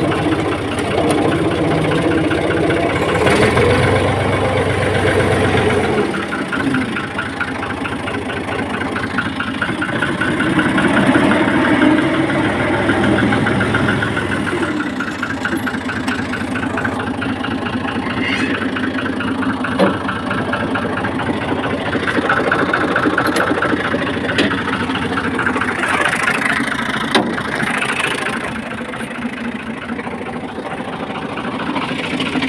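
Fiat 480 tractor's three-cylinder diesel engine running, heard from the driver's seat. Its note shifts a few times and is loudest about ten to fourteen seconds in, with two short clicks in the second half.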